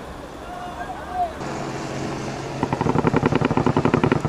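Men shouting in the street for the first second and a half, then the rotor of an AH-64 Apache attack helicopter passing overhead, building from a low hum into a loud, fast, even beating of the blades.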